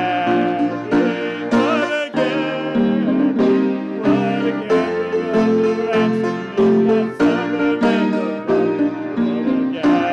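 Congregational hymn singing led by a male song leader, accompanied by grand piano, upright double bass and accordion, at a steady beat.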